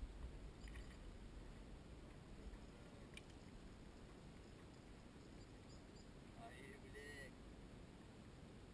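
Near silence: faint open-air background noise, with a low rumble in the first couple of seconds and a brief faint pitched sound, such as a distant voice or call, near the end.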